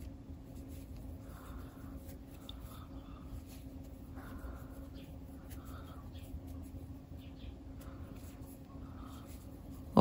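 Faint, irregular soft rustling and scratching of thick cotton twine being drawn through the work by a crochet hook as stitches are made.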